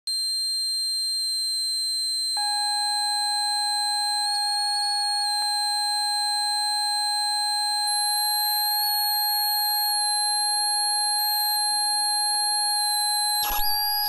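A homemade chaotic multi-voice oscillator circuit, driving a dead circuit board through nudgeable fishing-weight contacts, sounds several steady high electronic tones. A lower tone joins about two seconds in, and faint wavering, gliding tones come and go over them from about eight seconds. Near the end, bursts of crackling noise break in as a hand presses the contacts.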